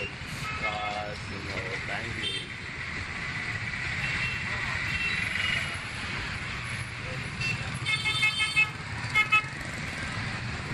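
Steady motorcycle and traffic rumble while riding in dense city traffic, with a run of short vehicle horn toots near the end: several quick beeps, then two more about a second later.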